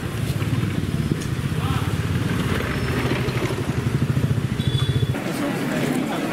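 A motor scooter's small engine running as it rides past, with a rapid low pulsing that grows stronger and then stops abruptly about five seconds in.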